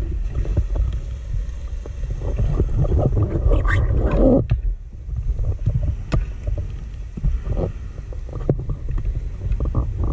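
Underwater recording of a scuba diver's breathing bubbles, heard through the camera housing: a steady low rumble, with a burst of bubbling from about three to four and a half seconds in and shorter bursts later.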